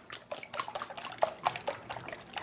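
A wire whisk beating raw eggs in a mixing bowl: rapid, even clicks of the wires against the bowl, about seven a second, with the liquid egg sloshing.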